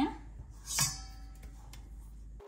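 A brief metallic clink with a short ring, about a second in, from the stainless steel mesh sieve and mixing bowl as flour is being sifted.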